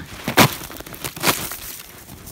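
Footsteps crunching through a hard crust on deep snow, the crust formed by rain the day before, about one step a second.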